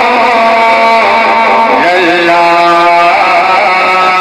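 A man singing long, drawn-out notes into a microphone over a loudspeaker system, his voice sliding up and down between pitches in a melodic recitation, with a new note sliding in about two seconds in.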